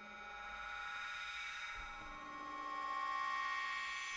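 Absynth 5 software synth playing its Abstract Bells preset: a sustained, bell-like drone of several steady tones that swells in slowly, its envelope set for a slow build. A further note enters about halfway through and the sound grows louder towards the end.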